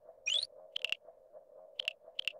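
Synthesised electronic sound effect: a quick rising chirp, then short clusters of high beeps about a second apart, over a soft, steady pulsing tone.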